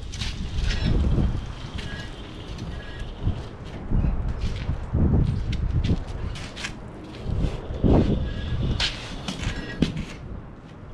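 Wind rumbling on the microphone, with scattered knocks, creaks and a few short squeaks from an old hot rod coupe being rolled and steered by hand.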